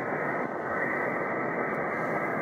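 Steady hiss with no high treble from a Yaesu FT-847 transceiver receiving in upper sideband on the JO-97 satellite's 145 MHz downlink, with no station coming through: an empty pass on the linear transponder.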